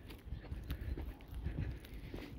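Footsteps of a person walking at a steady pace on a compacted dirt-and-gravel road bed, with a low rumble of handling or wind on the microphone.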